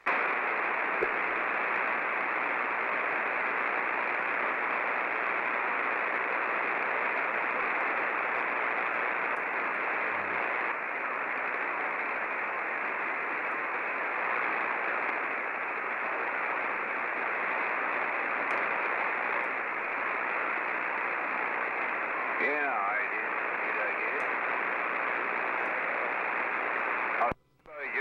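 CB radio tuned to lower sideband putting out steady, band-limited static hiss through its speaker, with a faint garbled sideband voice surfacing briefly under the noise late on. The hiss cuts off abruptly just before the end.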